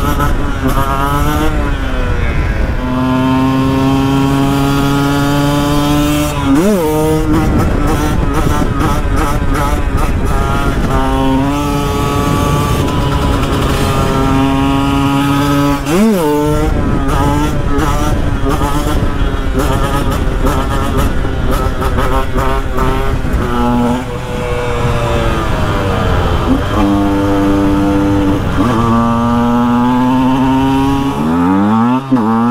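KTM 125 EXC two-stroke single-cylinder engine running hard as the motorcycle is ridden, holding steady high revs for long stretches. Its pitch drops and climbs again sharply twice, about a fifth of the way in and about halfway through.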